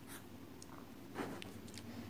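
Quiet room tone with a faint hum and hiss, and one short, soft sound a little over a second in.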